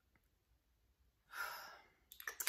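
Near silence, then about a second and a half in a woman lets out one sighing breath that fades away.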